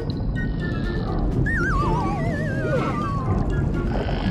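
Background music with a cartoon dolphin-call sound effect: two overlapping warbling whistles that glide down in pitch, starting about a second and a half in.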